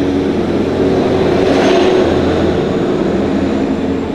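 Street traffic: a motor vehicle engine running close by, with a swell as a vehicle passes about two seconds in, then easing off.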